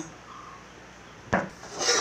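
A single sharp knock about a second and a half in, then a short scrape as an aluminium plate used as a lid is slid off the rim of a large pot.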